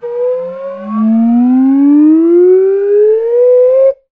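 A loud, siren-like wail that climbs steadily in pitch for about four seconds and then cuts off suddenly. A second, higher tone sounds with it for the first second before breaking off.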